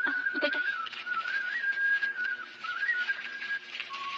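A single high, pure-toned, whistle-like melody line. It holds on one note with small step rises and falls and stops shortly before the end. A short spoken phrase comes about a third of a second in.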